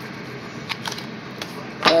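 Construction work in the background: a steady din with three sharp knocks in the middle.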